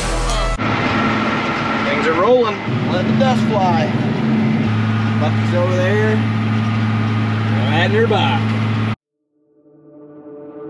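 Tractor engine running steadily under tillage load, heard from inside the cab, a low hum with field noise. A few brief wavering voice-like sounds rise and fall over it. It cuts off about nine seconds in, and music fades in near the end.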